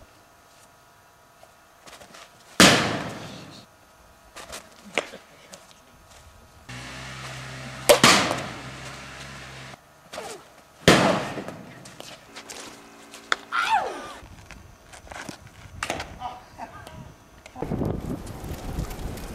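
Plastic Blitzball pitches striking the metal garage door behind the batter: three loud bangs, each ringing out for about a second, with smaller knocks in between.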